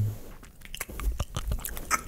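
A person chewing a mouthful of honeycomb right at a microphone, with irregular small clicks and smacks of the comb between the teeth.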